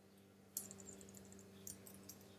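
Faint typing on a computer keyboard: a run of light key clicks starting about half a second in.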